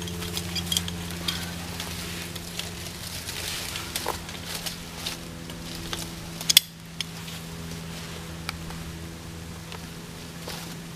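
Metal climbing hardware on a rope, a knee ascender and carabiners, clicking and clinking as it is fitted and handled, with one sharp louder clack about six and a half seconds in. A steady low hum runs underneath.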